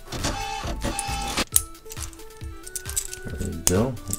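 Light background music, a simple melody of held notes stepping up and down, with a few sharp plastic clicks from a small transforming toy figure being handled.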